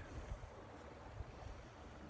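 Faint, uneven low rumble of wind buffeting a phone's microphone.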